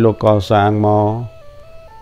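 A man speaking for about the first second, then faint background music: a slow melody of long single notes, each held steady before stepping to the next pitch.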